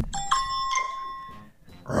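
A phone charades game's correct-answer chime: a bright, bell-like ding of a few high notes that starts just after the beginning and rings out, fading over about a second and a half.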